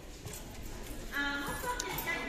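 Aluminium drink cans knocking and clinking against each other on a shop shelf as one is taken out. About a second in, a steady held tone with many overtones comes in and becomes the loudest sound.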